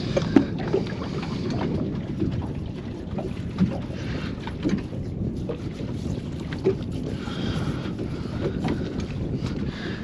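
Wind buffeting the microphone on an open boat at sea: a steady low rumble, with a few faint small knocks.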